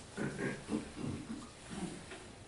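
Low, murmured human voice sounds in four short runs without clear words.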